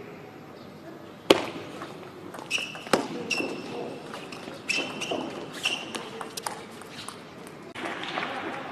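Table tennis rally: sharp clicks of the ball off paddles and table, the loudest about a second in, with short high squeaks in between. Crowd noise rises as the point ends near the close.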